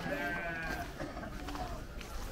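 A single short bleat from livestock, lasting about half a second at the start, over a low background of voices.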